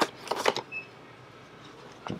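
Cardboard action-figure boxes tapped and shuffled by hand: a few sharp clicks in the first half-second, then quiet store background.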